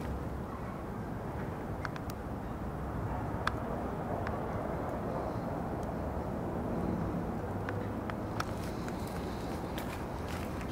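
Steady low outdoor background rumble with a few faint clicks scattered through it.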